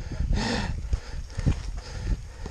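Mountain bike rolling down a rough clay and root trail: irregular knocks and rattles from the bike jolting over bumps, over low wind rumble on the microphone. The sharpest knock comes about one and a half seconds in.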